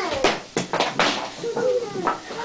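Young children shouting and squealing without clear words: a falling cry at the start and another call in the second half, with a few short knocks in between.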